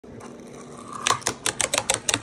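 Fingerboard rolling down a small wooden staircase, its deck and wheels clacking on each step in a quick, even run of sharp clicks that starts about a second in.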